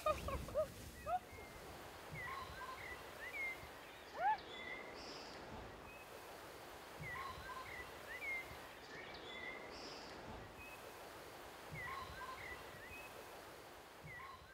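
Birds chirping outdoors: short, soft chirps and whistles over a faint hiss, with a similar run of calls coming back about every five seconds.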